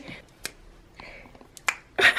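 Two sharp finger snaps about a second apart, the second louder.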